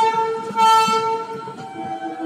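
Train horn sounding in two loud pulses in the first second, its tone fading by about one and a half seconds in, when a lower-pitched horn tone takes over. Under it runs the rumble of passenger coaches rolling past on the track.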